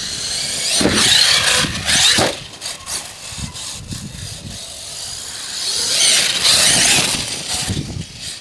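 HPI Savage Flux HP brushless RC monster truck driving on dry grass, its electric motor and drivetrain whining in two loud bursts of throttle, about a second in and again around six seconds, with a quieter stretch between.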